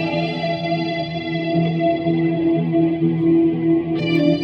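Les Paul-style electric guitar with reverb playing slow, dark psychedelic blues: held notes ring out and their treble slowly fades, until a new note is struck right at the end.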